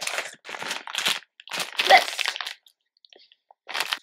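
Plastic snack packaging crinkling and rustling as it is picked up and handled, in a run of bursts, then a short pause, then another brief rustle near the end.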